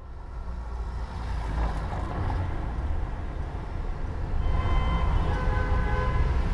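Street traffic ambience: a steady low rumble of passing vehicles, with a faint high tone joining about four and a half seconds in.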